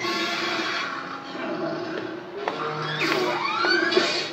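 Cartoon soundtrack music with sound effects, played through laptop speakers, with a short click midway and a rising glide in pitch near the end.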